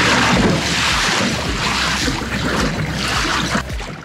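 Wind buffeting the microphone over water rushing and splashing along the hull of a fishing kayak under power through choppy waves: a loud, steady rush with a low rumble beneath.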